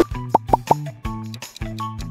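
Upbeat background music with a steady bass line and plucked notes. Three quick pop sound effects come in the first second as a transition effect.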